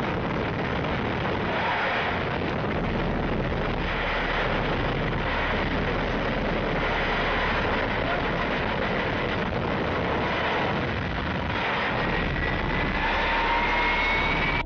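A homemade car's rocket engine firing, giving a loud, steady rush of exhaust noise. A thin whine rises in pitch near the end.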